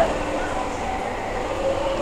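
Go-kart engines running as a steady, even hum that echoes through an enclosed concrete underground parking garage.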